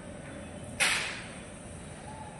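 A single sudden, sharp handling sound about a second in, fading within half a second, from hand work with small tools on a board, over a steady low background noise.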